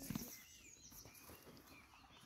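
Faint chirping of small birds: short, curving calls repeating through the clip. A brief low thump just after the start is the loudest sound.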